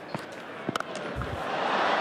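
A cricket bat strikes the ball with a sharp crack under a second in, and a stadium crowd's cheer swells as the ball is hit for six.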